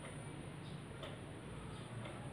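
Quiet room with a low steady hum and faint, regular ticks about once a second.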